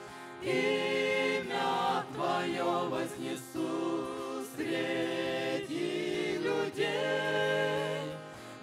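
A mixed group of men and women singing a Russian worship song in harmony to acoustic guitar, in long held phrases with a short breath near the start and another near the end.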